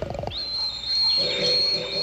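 Cartoon sound effect of a whimsical flying machine starting up: a quick rattle of clicks, then a high whistling tone that slides up and holds steady, joined about a second in by a lower steady hum.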